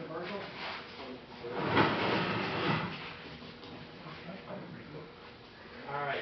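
A tall stage gangway scraping as the crew pushes it upright, a noisy scrape about a second long that starts about two seconds in, with voices in the background.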